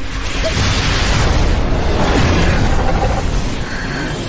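Animated-battle sound effect of an energy blast: a loud explosive rush with deep rumble that bursts in suddenly and runs on, easing a little near the end.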